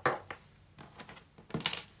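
Handling noise of hands working a crocheted cotton bag and sewing needle on a table: a sharp knock at the start, a few faint ticks, and a short rustling scrape near the end.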